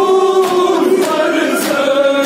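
A group of men singing a Kashmiri noha (mourning elegy) together in a held, mournful chorus behind an amplified lead voice. Sharp beats land about every half second and keep time, typical of the mourners' matam chest-beating.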